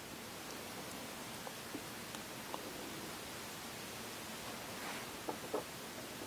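A steady low hiss of room tone, with a few faint light clicks from small resin model parts being handled, several of them close together near the end as the model is set down on the wooden bench.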